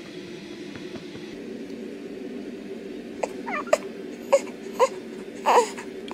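Newborn baby making a run of short, high little whimpers and squeaks, starting about three seconds in. These are sleep noises, which the mother takes for him dreaming. A steady low hum runs underneath.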